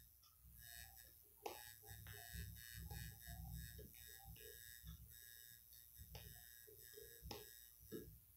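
Near silence: faint room tone with a low hum and a few faint short taps.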